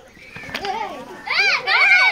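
Children's high-pitched voices calling out, quiet at first and growing loud about a second and a half in.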